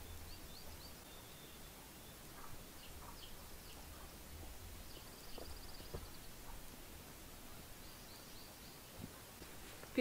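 Faint birdsong: scattered high, short chirps, with a brief trill about five seconds in, over a low steady rumble of outdoor background noise.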